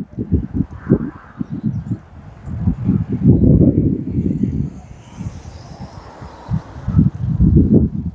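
Wind buffeting the phone's microphone in irregular low rumbling gusts, loudest about three seconds in and again near the end, over faint sound of a car driving slowly round the roundabout.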